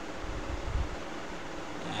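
Steady background hiss of room noise picked up by the microphone, with a brief low rumble about half a second in.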